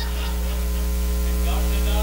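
Steady electrical mains hum with a ladder of overtones, slowly growing louder, with faint voices in the background.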